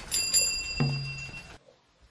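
Bicycle bell rung twice in quick succession, its bright ring holding for about a second and a half, over a background music score with a low note near the middle.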